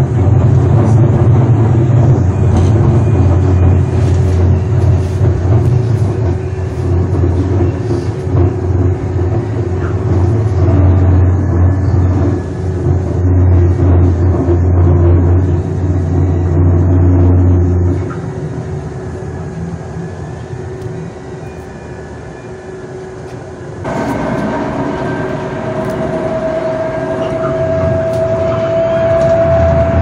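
Electric light-rail car running, heard from inside: a heavy low rumble for the first eighteen seconds or so, then quieter. A few seconds later a whine starts and slowly rises in pitch as the train picks up speed.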